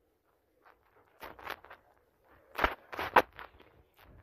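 Soft knocks and rustles of a phone being handled close against clothing, in two short clusters after about a second of near silence, with bare feet stepping on a tile floor.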